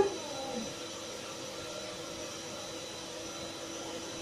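Aquarium pump running: a steady hum and hiss with a few faint constant tones in it.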